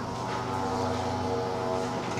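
A steady droning hum made of many evenly spaced pitched layers, holding level and pitch without change.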